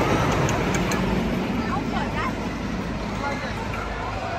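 Wooden roller coaster train rumbling along its track, the rumble slowly fading, with a few voices heard around two seconds in.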